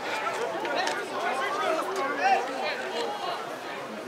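Several people talking at once near the camera, overlapping voices with no clear words.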